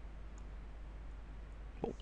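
A single faint computer mouse click about a third of a second in, over a steady low electrical hum in a pause between words.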